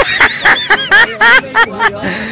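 A man laughing, a quick run of short chuckles.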